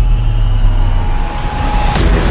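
Deep, loud rumble from the sound design of a cinematic logo intro, with a thin high tone held through the second half, running into a hit at the very end.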